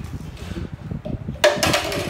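Plastic cups tapping and knocking on a wooden tabletop as they are flipped, a quick run of light knocks. A voice cries out about one and a half seconds in.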